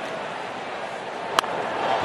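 Steady ballpark crowd noise, then a single sharp crack of a wooden bat hitting the pitch about a second and a half in, a line drive. After it the crowd noise starts to swell.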